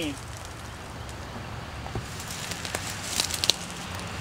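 Footsteps through dry leaf litter and brush, twigs and leaves crackling, sparse at first and busier in the second half, over a steady low rumble.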